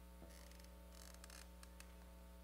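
Near silence: a steady electrical mains hum, with a few faint clicks and brief rustles about a quarter second in and again around the middle.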